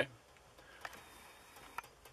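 Two faint short clicks, one a little before a second in and one near the end, over quiet room tone.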